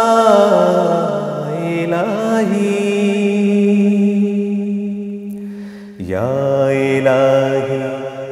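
A man singing a Bangla Islamic song (gojol) in long, drawn-out phrases. One note is held and slowly fades until about six seconds in, then a new phrase begins.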